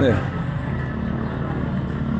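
A motor vehicle's engine running steadily at low revs, a low even hum.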